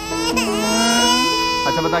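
A man's comic mock crying: one long wailing sob that rises at the start and is then held for more than a second.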